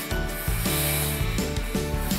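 Breathy rushing of air blown hard through drinking straws to push wet paint across paper, over background music.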